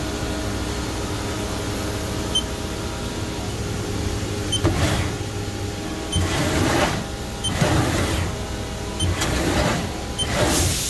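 Haas SL10T CNC lathe's tool turret indexing four times in the second half, each index a short whirring, hissing burst, over the machine's steady hum. A short high beep comes just before most of the indexes.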